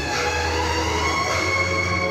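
Instrumental music with long held notes over a steady bass note, accompanying a group dance.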